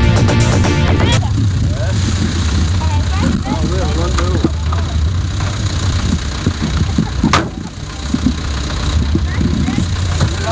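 Electronic background music cuts off about a second in, giving way to a Land Rover Series four-wheel-drive's engine running low and steady while the vehicle is stuck in mud. People's voices call out a few seconds in, and there is a single sharp knock near the end.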